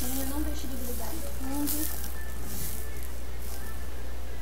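Rice toasting in hot oil in a pan while being stirred with a wooden spoon: an uneven hissing sizzle that comes in surges, over a low steady hum.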